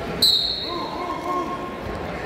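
Wrestling referee's whistle: one short, sharp blast about a fifth of a second in, starting the bout from the referee's position. Spectators' voices carry on around it.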